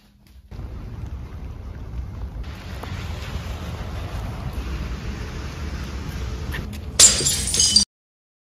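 A steady low rumble that turns hissier about two and a half seconds in, then a loud shattering crash near the end that cuts off suddenly into silence.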